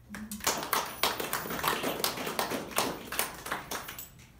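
A small group of people applauding, with irregular claps that stop near the end.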